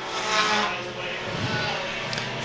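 Pure stock race car engines running at speed around a short oval, the engine note swelling about half a second in and then easing off.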